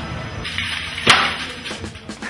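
A single sharp crack about halfway through, over a noisy background.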